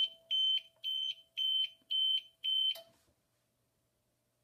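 APC Smart-UPS 700's alarm beeper sounding a high, steady-pitched beep about twice a second, five times, then a click as it stops. The owner takes the beeping for some sort of test triggered by holding the power button.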